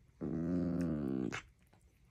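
A dog's drawn-out play growl, one steady pitched call lasting about a second, made while wrestling with another dog rather than in aggression.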